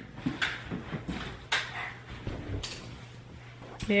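Faint clicks and scrapes from a gas log fireplace being lit, spaced about a second apart, with a sharper click near the end.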